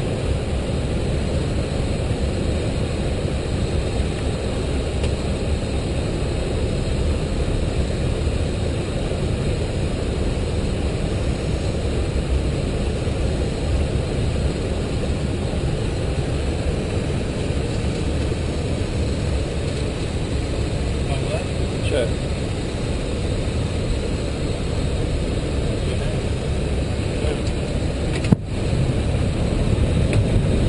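Steady flight-deck noise of an Airbus A320 in flight, a dense low rumble of airflow and engines that holds even throughout. Near the end there is one short sharp click.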